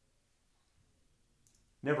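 Quiet room tone through a pause, with one faint short click about one and a half seconds in, then a man's voice starting near the end.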